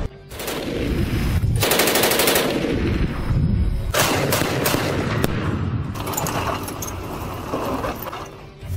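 Bursts of rapid automatic gunfire from a tracked robotic combat vehicle's gun, the first about one and a half seconds in and another starting sharply at about four seconds.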